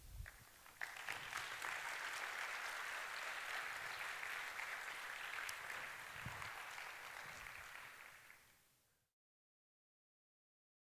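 Audience applauding, building up about a second in, holding steady, then fading out near the end before the sound cuts off.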